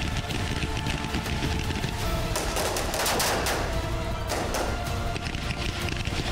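Rifle fire in rapid automatic bursts, shot after shot, over dramatic background music.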